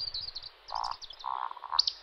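Male Eurasian woodcock's roding display call: low, croaking grunts in two groups, followed near the end by a sharp, high squeak.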